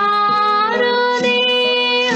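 A young woman singing an Indian devotional song solo, her voice gliding between held notes over steady held notes of instrumental accompaniment.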